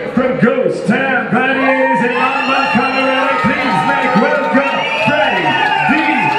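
Crowd of spectators cheering, whooping and shouting, many voices overlapping, as a boxer is introduced from the ring.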